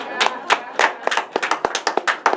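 A few people clapping: a brief patter of separate, irregular hand claps that thins out near the end.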